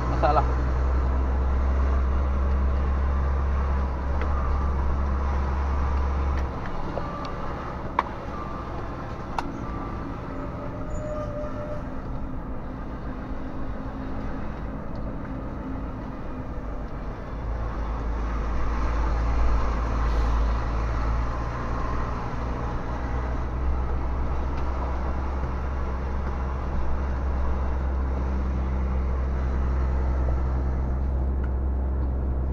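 Volvo FMX truck's diesel engine heard from inside the cab while driving, a steady low drone that eases off about six seconds in and builds up again after about seventeen seconds.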